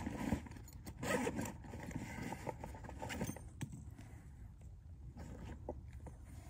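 Handling sounds of gear as a ferro rod and striker are fetched: rustling and short scrapes with a few sharp clicks, busiest in the first couple of seconds and quieter after that.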